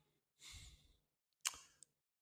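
Faint exhale of a man close to a headset microphone about half a second in, then a short sharp click about a second and a half in.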